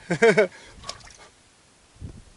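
A man's brief wordless exclamation of delight at the start, then quiet with a single faint click about a second in.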